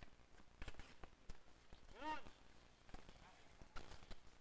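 Faint, scattered sharp knocks of hockey sticks striking the ball and the court surface, with one short shout from a player that rises and falls in pitch about halfway through.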